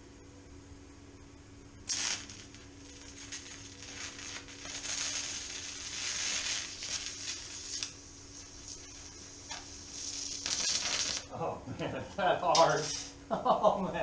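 TIG welding arc on aluminum: a steady hiss that starts suddenly about two seconds in and cuts off about nine seconds later. Voices follow near the end and are louder than the arc.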